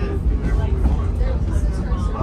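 Pacific Electric 717, a 1925 electric interurban car, running along the track, heard from inside the passenger compartment as a steady low rumble, with indistinct passenger chatter over it.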